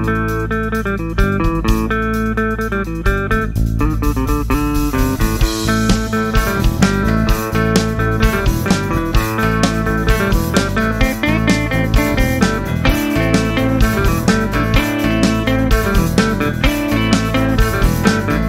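Instrumental passage of a blues-rock band's song: electric guitar over bass guitar and a steady drum beat. The playing grows busier about four seconds in.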